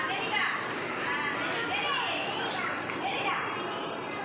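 A group of young children's voices at once: chatter, calls and high-pitched squeals of preschoolers at play.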